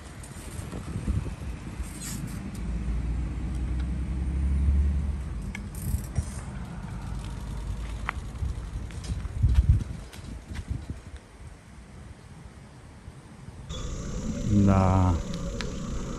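A bicycle being ridden: an uneven low rumble of tyres rolling and wind on the microphone, with a few light clicks and rattles. A man starts speaking near the end.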